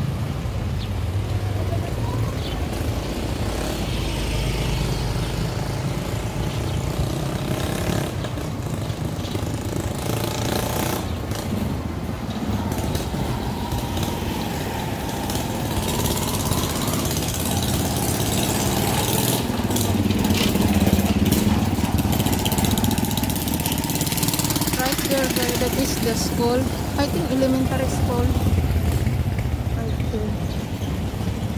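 Street traffic: motorcycle-sidecar tricycle engines running as they pull away and pass, strongest at the start and again later, over steady street noise with indistinct voices.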